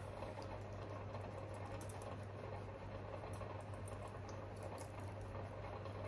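Quiet room tone: a steady low hum with faint scattered small ticks.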